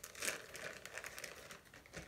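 Plastic packaging crinkling and rustling as it is handled, with a louder rustle a moment in.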